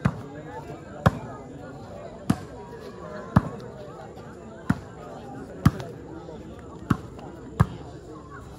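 A volleyball being hit back and forth in a rally: eight sharp smacks roughly a second apart, the last two closer together, over steady crowd chatter.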